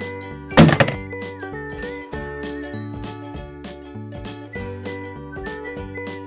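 Upbeat children's background music with a steady bass beat and a tinkling melody. A little over half a second in, one loud, short thunk-like sound effect cuts across the music.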